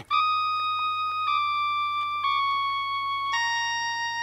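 Background music: a keyboard playing sustained single notes, each held about a second, stepping down in pitch, over a faint low hum.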